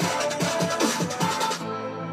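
Electronic future bass music playing back through studio monitors: a busy full-range section with a repeating downward-sweeping figure, which drops away about one and a half seconds in, leaving soft held synth notes.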